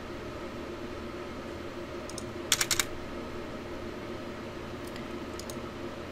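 A quick run of sharp computer clicks about two and a half seconds in, with a few fainter clicks later. A steady hum from the computer runs under them.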